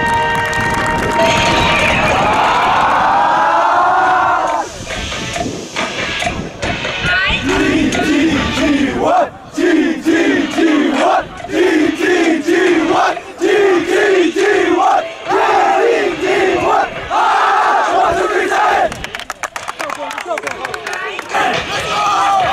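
A group of high school soccer players in a pre-game huddle shouting together. First comes a swelling yell of many voices, then a rhythmic unison chant at about two shouts a second, then rapid clapping near the end.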